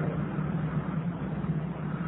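Steady low hum with an even hiss: the recording's background noise, with no speech over it.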